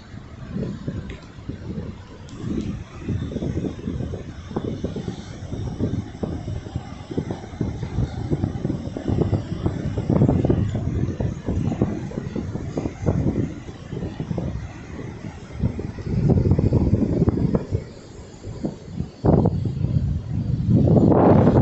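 Wind buffeting a phone's microphone in irregular gusts, with a faint steady wash of surf beneath.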